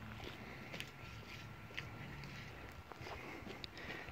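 Faint outdoor background noise with a few soft, scattered clicks.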